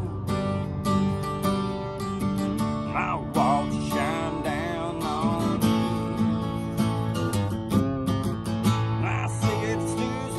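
Steel-string acoustic guitar strummed in a steady rhythm, its chords ringing on between strokes.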